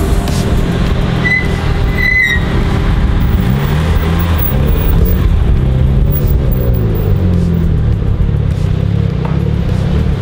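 Two performance cars, a red sports sedan and a silver Nissan Skyline R34 GT-R, rolling in at low speed. Their engines rise and fall in pitch as they turn in, with music underneath.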